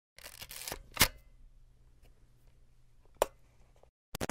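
Sound effects for a channel logo intro: a short noisy rush in the first second, a sharp click about a second in, a faint low hum, then another sharp click near the end.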